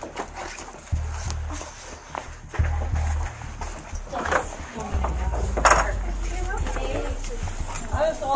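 Body-camera rustle and footsteps as the wearer walks out through a doorway, over deep bass notes of background music, with faint indistinct voices.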